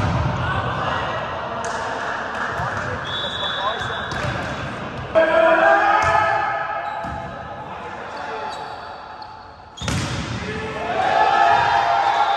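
Volleyball rally: several sharp slaps of hands on the ball, the loudest about five seconds in and again near ten seconds, with players shouting after the hits.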